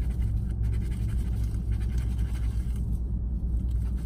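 Steady low rumble inside a parked car's cabin, with faint scratching of a scratch-off lottery ticket being rubbed during the first couple of seconds.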